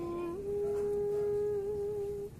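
A person humming one long held note that steps up a little in pitch about a third of a second in.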